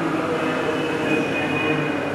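Steady room noise: a continuous hum and hiss with faint murmuring voices.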